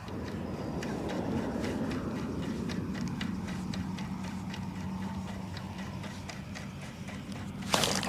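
Lure retrieve on a spinning rod and reel: faint irregular ticks over a low steady rumble. Near the end comes a sudden loud burst as a speckled trout strikes the lure and is hooked.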